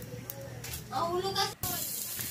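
A voice speaking briefly and faintly about a second in, then, starting suddenly about a second and a half in, the steady hiss of sliced ginger frying in a little hot oil in a wok.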